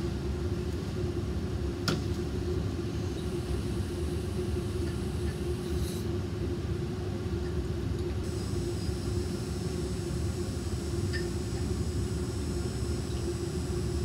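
Steady low rumble with a constant hum from a lab fume hood's ventilation running. There is a single light click about two seconds in, and a faint high hiss joins about eight seconds in.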